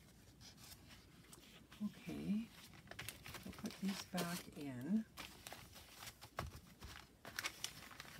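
Paper rustling with light taps and clicks as journal pages and papers are handled and set down on a table, with a few murmured words.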